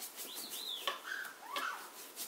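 A pet parrot gives a few short whistled calls that rise and fall in pitch, over faint, quick, scratchy ticking.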